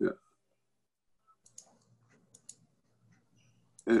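A brief spoken 'yeah', then near silence with a faint hum and a few faint clicks about a second apart.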